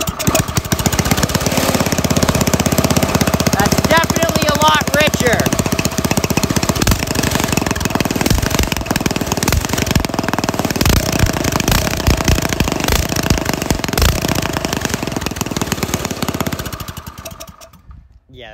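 Single-cylinder small go-kart engine running with rapid, even firing. It has just been fitted with a larger carburettor jet and is running rich. It dies away near the end.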